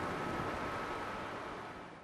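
Faint steady hiss of studio room tone with a thin high tone in it, slowly fading and cutting out at the end.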